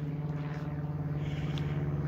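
A steady low mechanical hum at an even level.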